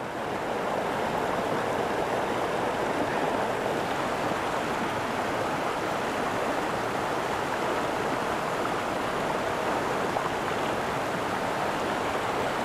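A rain-swollen moorland stream in full flow, rushing over rocks and a small waterfall: a steady, even rush of water that does not change.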